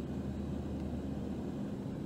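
Steady low hum with a faint hiss: background room tone, with no distinct events.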